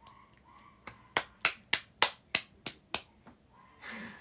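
A quick run of about eight sharp hand smacks, roughly four a second, lasting about two seconds.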